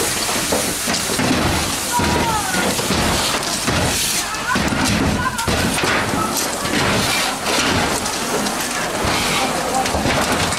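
Fire hose spraying water onto a burning outbuilding: a steady, loud hissing rush of spray on the fire.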